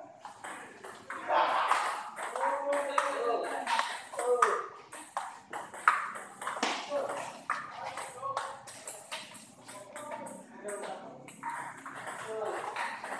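Table tennis balls being hit in rallies: sharp clicks of ball on paddle and table at irregular intervals, overlapping from more than one table, with people's voices talking in the hall.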